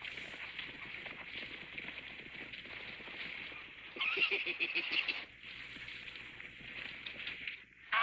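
A man laughing heartily for about a second, some four seconds in, over a steady background noise.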